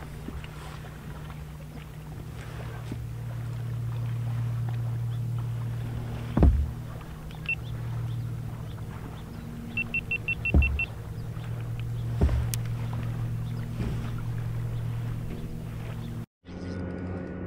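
Low, steady engine hum that swells and eases. Three dull knocks sound over it, and a quick run of short high beeps comes about ten seconds in.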